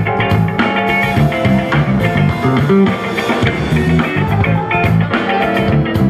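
Live jazz-funk band playing amplified: electric guitar and drum kit with keyboard and saxophone over a steady groove.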